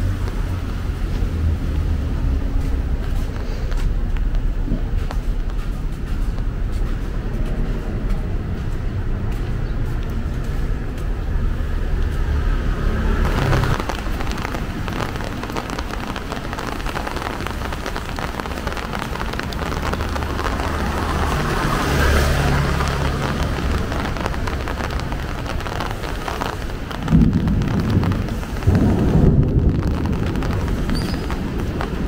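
Steady hiss and low rumble of rain on a wet street, with two louder low rumbles near the end.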